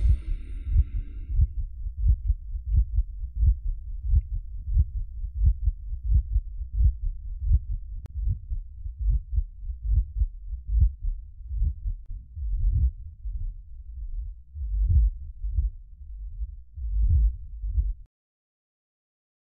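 Heartbeat sound effect: low, regular beats about twice a second that space out and grow uneven in the last few seconds.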